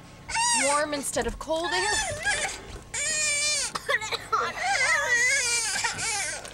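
A young child crying and whining in a high voice: several long wordless wails that rise and fall in pitch, with short breaks between them.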